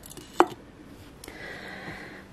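A single sharp tap as a sand dollar is set down on a bookshelf, over a faint background hiss.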